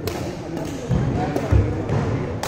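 Badminton rally: a sharp crack of a racket striking the shuttlecock at the start, then two heavy low thuds on the sprung wooden floor of the sports hall, about a second in and again about half a second later, over background chatter in the echoing hall.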